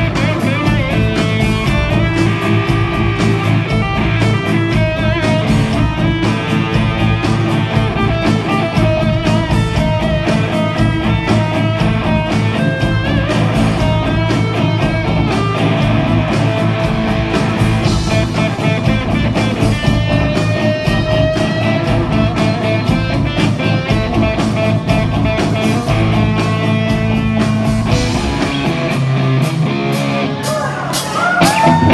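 Live rock band playing electric guitars, bass guitar and drums with a steady beat.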